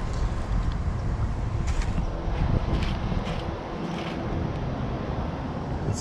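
Steady low rumble of wind buffeting the camera's microphone outdoors, with a few faint clicks.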